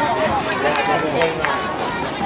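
People talking near the microphone: indistinct spectator conversation with no clear words.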